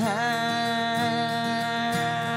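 A male voice sings one long held note, dipping into it at the start, over two acoustic guitars being strummed.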